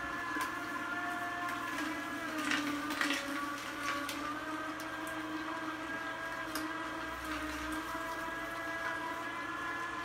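Vertical slow juicer running through carrots: a steady motor hum made of several held tones, which sag briefly in pitch about two and a half seconds in, with a few faint clicks.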